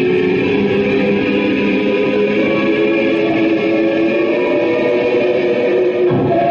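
Live noise music from a table of effects pedals and electronics: a dense, loud, steady drone of held, overlapping tones that shift slowly in pitch.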